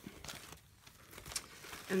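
Faint rustling of paper sheets in a clear plastic sleeve as they are handled and laid down, with a few light ticks.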